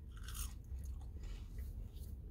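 Faint chewing of a french fry, a soft irregular mouth sound with no words.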